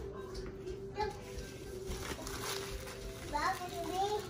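A small child's high-pitched voice in the background, with short calls about a second in and again near the end, over a steady hum.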